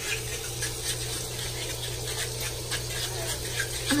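Bacon and eggs frying in pans on an electric stove: a steady sizzle with many small scattered pops, over a constant low hum.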